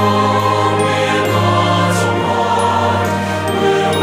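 Mixed SATB church choir singing sustained chords with accompaniment, in a slow sacred choral anthem.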